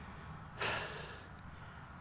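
A man's short breathy exhale about half a second in, in a pause between his words, over quiet outdoor background.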